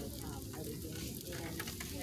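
Crackling, rustling handling noise with scattered small clicks over a store's background hum, with faint distant voices.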